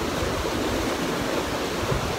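Steady rushing noise of wind buffeting the phone's microphone outdoors, with an irregular low rumble.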